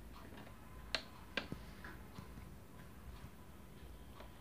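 Small, sharp plastic clicks as cable plugs are handled at the side of a portable DVD player: two distinct clicks about a second in, with a few fainter ticks around them.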